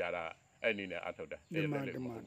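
A man speaking in short phrases over a steady, high-pitched drone of crickets.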